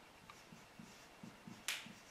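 Marker writing on a whiteboard: faint, soft strokes, then one short, sharp tap of the marker against the board near the end.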